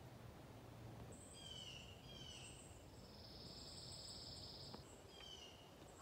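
Faint woodland ambience with a bird calling: a few short, high, falling notes from about a second in, and a steady high buzzy trill lasting about a second midway.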